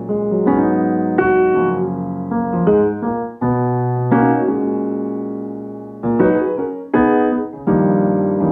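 Background music: piano chords, each one struck and then fading away.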